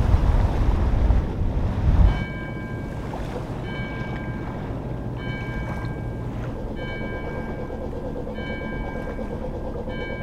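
Wind buffeting the microphone on a sailboat under way: a loud, low rumble that drops off suddenly about two seconds in. After that comes a steadier, quieter wash of water, with short clear ringing tones repeating roughly once a second.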